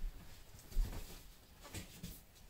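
Three faint, soft bumps and rustles from a cardboard box being handled, at the start, just under a second in and near the end, over quiet room tone.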